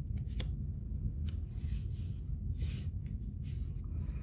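Cardstock being handled and pressed down: a few soft taps and light paper rustling as a black panel on foam mounting squares is stuck onto a folded card, over a steady low background hum.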